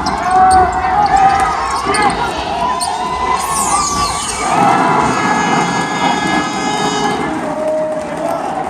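Basketball game sound: several voices shouting and calling over one another, with a basketball bouncing on the court floor.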